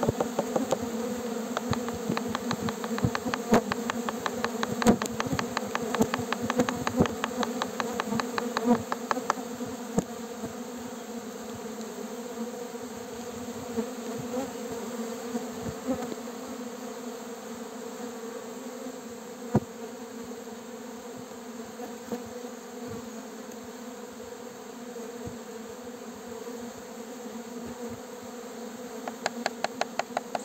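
Uruçu-amarela stingless bees buzzing in numbers over an opened hive, a steady hum. A rapid patter of sharp ticks runs through the first nine seconds and starts again near the end.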